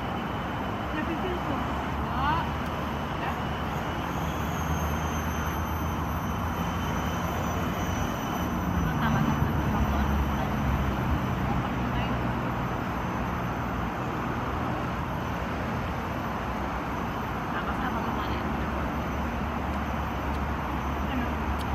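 Steady rumble of city traffic, swelling a little about nine to eleven seconds in, with people talking in the background.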